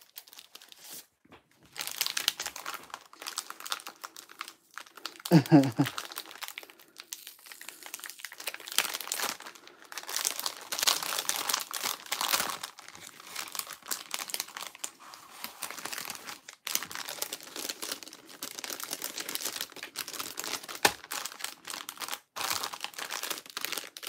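Clear plastic bags crinkling and rustling as hands fill and fold them, an irregular crackle that keeps on with short pauses.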